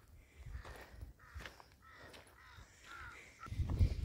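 A bird calling several times with short arching cries, over faint footsteps on a dirt path. A low buffeting rumble, the loudest sound, comes near the end.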